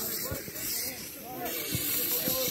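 Aerosol spray can hissing in one continuous burst that starts abruptly, with faint voices behind it.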